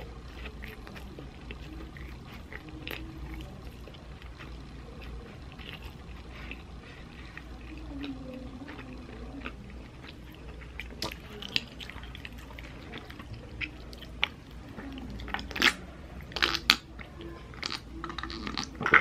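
Close-up chewing of a soft burger bun and filling, with wet mouth clicks and smacks over a steady low hum. The clicks grow sharper and louder near the end.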